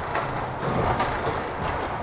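Kirakira Uetsu 485-series electric train running, heard from inside the passenger car: steady wheel-and-rail rumble with two short clacks, one just after the start and one about a second in.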